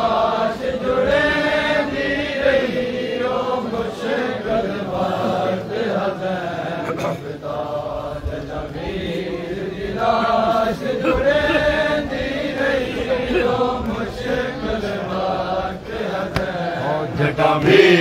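A crowd of men chanting a Punjabi noha together, many voices rising and falling through a slow mourning refrain.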